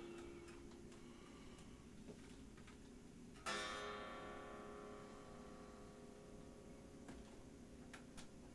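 Deviant Guitars Linchpin electric guitar played with its volume knob turned down, so only the faint unamplified strings are heard: light picking clicks, then a chord strummed about three and a half seconds in that rings and slowly fades.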